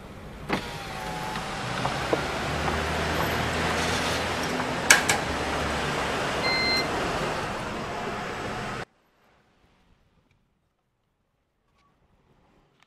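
A car's power window runs down with a short motor whine, letting in the steady sound of the idling car and the garage around it. Near the middle there is a sharp click, and a little later a short electronic beep from the parking-garage ticket machine as its button is pressed. The sound cuts off suddenly near the end.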